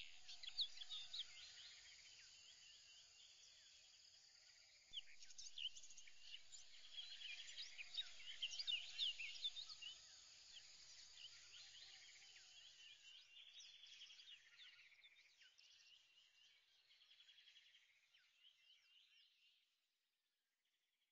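Faint outdoor bird chorus: many short chirps, quick sweeping calls and rapid trills from several birds. It gets louder about five seconds in, then fades out over the last several seconds.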